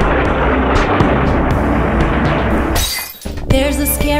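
A noisy cartoon sound effect over music, ending in a short bright crash just before three seconds in. A brief dip follows, then a new tune starts with jingling bells.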